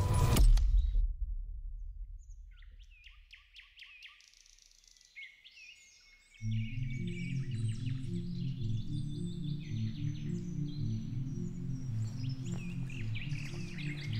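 A loud burst of noise at the very start that dies away over a couple of seconds, then birds chirping and singing. About six seconds in, low sustained music comes in under the birdsong and holds steady.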